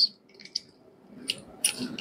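A few faint, short clicks and light handling noises from gloved hands fitting handpiece tubing and connectors on a portable dental unit.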